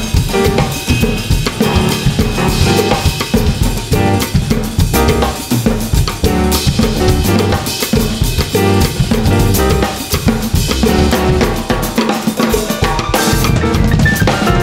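Three drum kits playing together in a busy jam: bass drums, snares and cymbals hitting thickly with no break.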